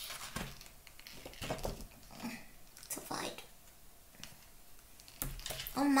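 Paper pages of a picture book rustling and flapping in short irregular bursts as a cloth hand-puppet paw fumbles to lift and turn a page.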